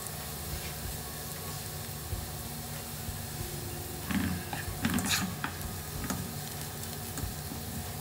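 Chopped garlic frying in hot oil in a pot, a steady sizzle as it browns. About four seconds in, a spatula stirs it with a few scrapes and knocks against the pot.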